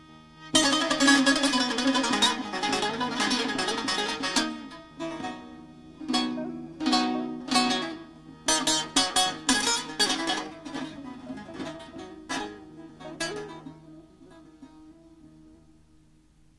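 Bağlama (long-necked Turkish saz) playing a solo instrumental opening in irregular phrases: runs of quickly plucked notes broken by short pauses, thinning out and fading near the end.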